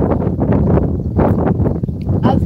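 Wind buffeting a phone microphone outdoors: a loud, uneven low rumble.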